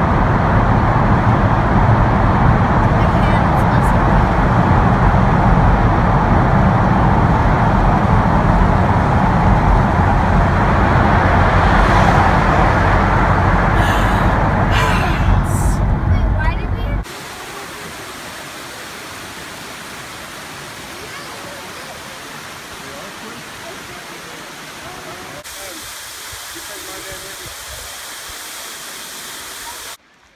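Car road noise heard from inside the cabin while driving through a highway tunnel: a loud, steady rumble and hiss of tyres and engine. About 17 s in it drops suddenly to a much quieter steady hiss of driving on open road, with the low rumble gone.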